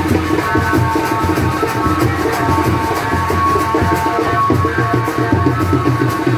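Loud dance music with a steady, driving drum beat, heavy bass and a sustained melody line, played over a loudspeaker stack.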